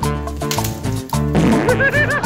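Upbeat Latin-style background music with a steady beat. About a second and a half in, a comic sound effect with a wobbling, bouncing pitch plays over it.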